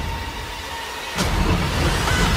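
Movie trailer sound design: faint held tones, then about a second in a sudden whoosh swells into a steady low rumble.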